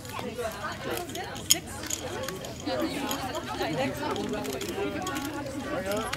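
Indistinct chatter of several people talking at once, with no one voice standing out.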